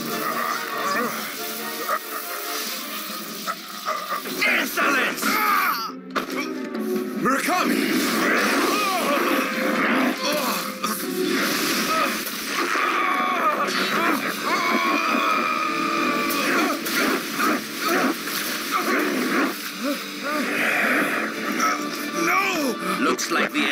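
Anime battle soundtrack: dramatic background music mixed with energy-blast sound effects and wordless cries and groans from the fighters, with a brief dip about six seconds in.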